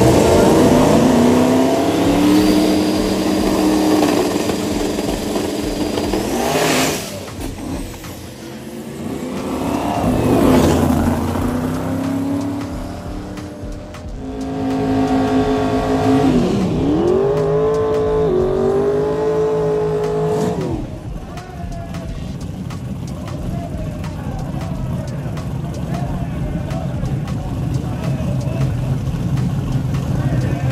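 Drag race car engines revving at high rpm, rising and holding pitch, with sudden loud surges about seven and ten seconds in and a stretch of hard revving from about fourteen to twenty-one seconds in. After that a lower, steadier engine rumble continues.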